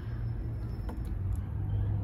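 Steady low rumble of outdoor background noise, with a faint click or two about a second in.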